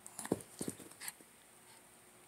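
A Shih Tzu makes two short vocal sounds in play, close together within the first second, with a few light clicks around them.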